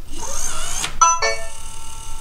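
August Wi-Fi Smart Lock (4th generation) unlocking: its motor whirs for about a second as it turns the deadbolt, then it plays its unlock chime, a few electronic notes that ring on, confirming the door is unlocked.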